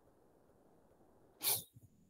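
Near silence, then about one and a half seconds in a single short, sharp breath noise from a person, like a quick sniff or huff.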